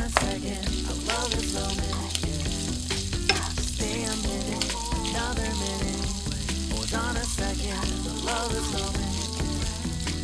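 Thin-sliced pork sizzling in oil in a nonstick frying pan as it is stir-fried and stirred with chopsticks, the meat browning. A background pop song with a steady bass line plays over it.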